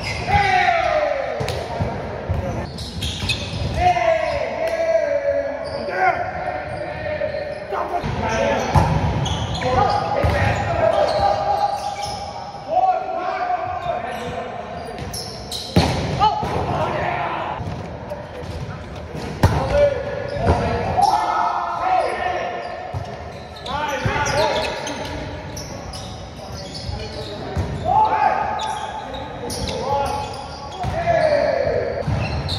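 Indoor volleyball rally: several sharp hits of hands and arms on the ball and the ball striking the hardwood floor, with players shouting calls to each other. Everything rings with the echo of a large gym hall.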